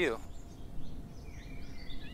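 Outdoor ambience: a low steady background rumble with a few faint, scattered bird chirps.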